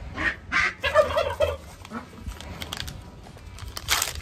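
Turkey gobbling, a quick rattling call about a second in. Near the end a short crackle as a syringe wrapper is torn open.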